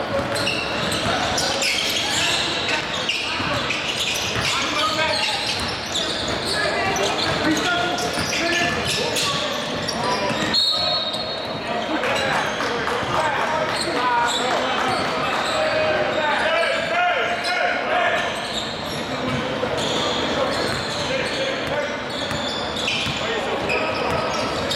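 Basketball bouncing on a hardwood gym floor during play, mixed with indistinct players' voices, all echoing in a large hall.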